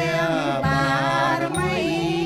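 Khmer Buddhist dhamma chant, sung in long, wavering held notes that glide between pitches.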